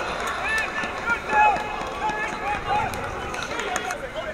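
Scattered short shouts and calls from footballers and spectators across a football pitch, with one louder shout about a second and a half in.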